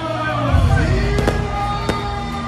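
Bangs at a street procession: a deep boom about halfway in, then two sharp cracks near the end. Under them run procession music with gliding tones and crowd noise.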